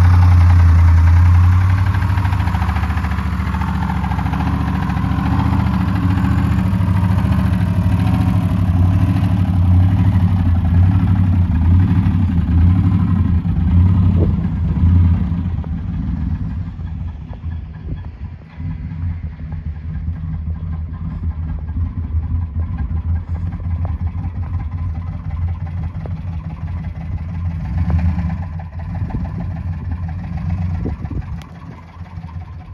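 Ford Expedition's 5.4-litre V8 idling steadily, a low, even hum that is loudest in the first half and grows quieter from about halfway through.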